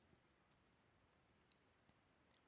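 Near silence: room tone with two faint, short clicks about a second apart.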